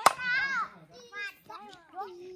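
Young children's voices, shouting and calling out at play in several short, high-pitched bursts, with one sharp knock right at the start.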